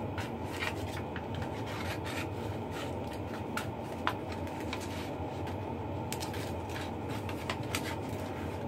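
Hands handling something out of sight: light rubbing with scattered small clicks and taps, over a steady low background hum.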